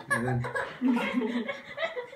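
People laughing in short bursts, in a small room.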